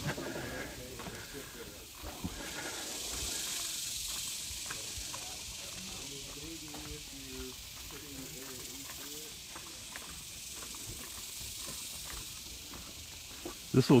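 Outdoor ambience: a steady high hiss, with faint voices talking in the background about six to nine seconds in.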